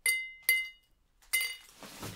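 Ice cubes dropped one at a time into a glass martini glass. There are three sharp clinks, each with a brief ringing note from the glass: at the start, about half a second later, and again nearly a second after that.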